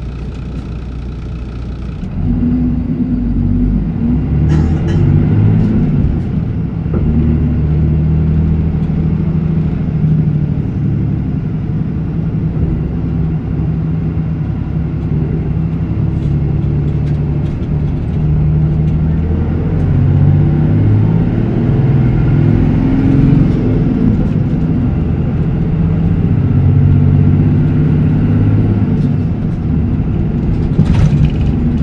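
Isuzu Erga Mio city bus (PDG-LR234J2) with its four-cylinder turbodiesel idling, then about two seconds in pulling away and running under load, the engine note rising and falling in pitch as the bus drives.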